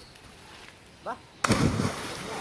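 A person plunging into a river pool: a sudden loud splash about a second and a half in, with water churning after it.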